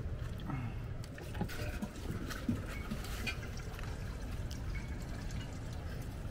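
Water pouring from a plastic jug through a spout into a camper van's water tank, a steady flow with a few light knocks.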